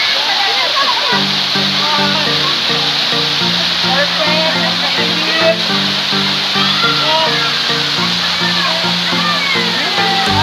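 Steady rush of a waterfall, with background music coming in about a second in and voices over it.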